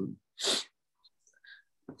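A man's quick, sharp breath about half a second in, a short hissy burst in a pause between hesitant words.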